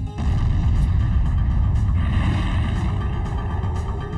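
Deep, steady rumbling sound effect, a cinematic space rumble that comes in suddenly just after the start and holds.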